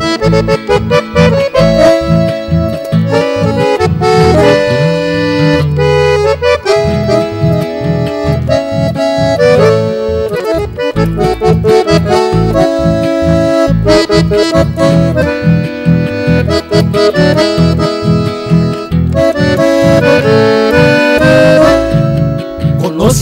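Instrumental break in a Paraguayan conjunto song: an accordion plays the melody over a bass and rhythm accompaniment with a steady beat.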